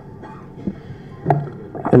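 Microphone handling noise over a steady low hum through the PA: a single knock about a second in as the microphone is grabbed, then a man's voice starts near the end.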